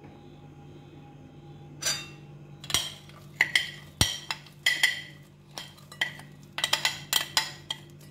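A metal spoon scraping and clinking against a glass dish as it pushes crushed biscuit crumbs into a glass bowl: a run of sharp clicks and scrapes starting about two seconds in, with one louder knock around the middle.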